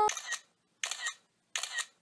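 Camera shutter clicks, three in a row, about three-quarters of a second apart.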